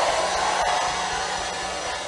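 Steady rushing background noise of a meeting hall, slowly fading, with a faint low hum underneath.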